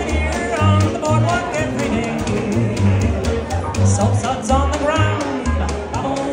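Live traditional jazz band playing a bouncy swing tune: an upright bass plays distinct walking notes under a steady beat of crisp strokes, with a gliding lead melody line over the top.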